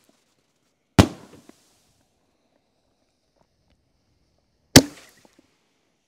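Two sharp reports from 5-inch fireworks canister shells, about four seconds apart. Each is followed by a brief fading tail.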